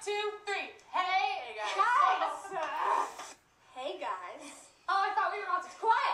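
Speech only: several women's voices talking.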